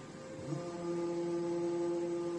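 Servo-driven hydraulic pump drive of a plastic injection molding machine running: a steady humming whine that comes in suddenly about half a second in and holds at one pitch, over a constant electrical hum.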